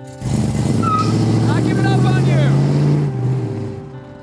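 A car engine running under acceleration as the car drives off, a low steady rumble that comes in about a quarter second in and fades away after about three seconds.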